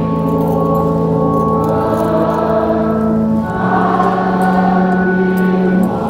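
Choir singing slow, long-held chords of sacred music, moving to a new chord about three and a half seconds in.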